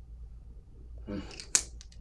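A perfume bottle being handled in the hands: a sharp click about one and a half seconds in, with two faint ticks just after. Just before the click comes a brief murmur of a man's voice.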